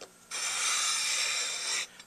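Metal Dukoff D9 saxophone mouthpiece slid table-down across abrasive paper on a flat plate in one steady scraping stroke of about a second and a half. It is a test stroke to see how flat the mouthpiece table is before refacing.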